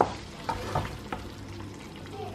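Wooden spoon stirring thick, cheesy kuymak in a metal pot, giving a few soft knocks against the pot over a faint steady hiss from the cooking mixture.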